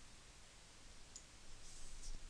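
Faint computer mouse clicks: a single click a little past a second in, then a brief cluster of clicking near the end.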